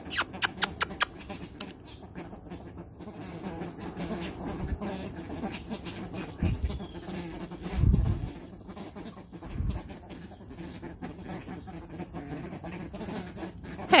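A flock of white ibises feeding on a concrete driveway: a quick run of sharp clicks in the first two seconds, then soft low calls and small taps from the flock. Three dull low thumps fall near the middle.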